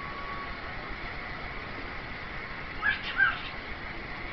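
Cockatiel giving two short chirps in quick succession about three seconds in, over a steady background hum with a thin high tone.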